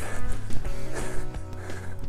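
Background music with steady, held notes.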